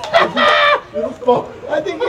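People's voices yelling in short, high-pitched calls, strongest in the first second.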